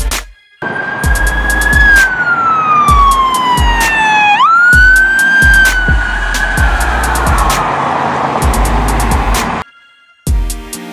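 Police car siren wailing over a backing music beat with a repeating bass drum. The siren makes one slow falling sweep, rises quickly back up about four seconds in, then holds a high note that wavers and fades before cutting off near the end.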